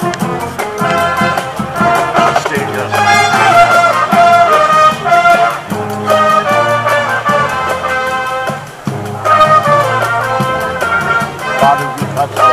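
Marching band playing live: trumpets and bass horns in harmony over a steady marching-drum beat.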